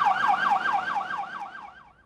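Ambulance siren in a fast yelp, its pitch sweeping up and down about seven times a second, fading out near the end.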